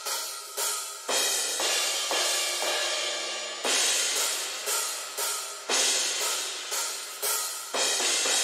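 Recorded drum-kit cymbals from a metal song, crashes and hi-hats, played back on a soloed cymbals track. The hits come about every half second to a second, each one bright and decaying, with almost no low end.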